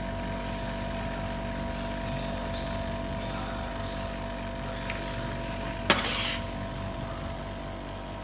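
Small bottle-filling machine running with a steady hum while miniature glass whiskey bottles are filled by hand, with one sharp clink of glass bottles about six seconds in.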